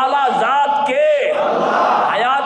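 Loud group zikr: a man's amplified voice calls out in rising-and-falling chants about twice a second, over a crowd of men's voices chanting with him.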